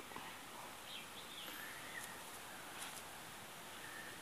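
Faint background hiss with a few soft, distant bird chirps, mostly about a second in.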